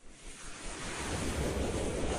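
Whoosh sound effect of a news logo sting: a rush of noise builds up out of silence, with a rising sweep starting past the middle.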